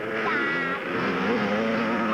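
Yamaha PW50 minibike's small two-stroke engine running, its pitch wavering and then holding steady.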